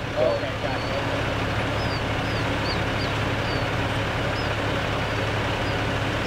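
Steady low drone of idling engines, with faint high chirps coming every half second or so from about a second and a half in.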